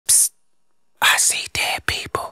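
Isolated rap vocal with no beat: a sharp whispered "psst", then after about a second a low, half-whispered spoken line of four short syllables.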